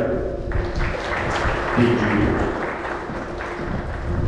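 Audience applauding, a steady clapping that runs on as a player walks up for her certificate.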